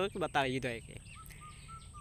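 A man's voice speaking Bangla for a moment, then a pause in which a few faint, short bird chirps sound in the background, about three of them in the last second.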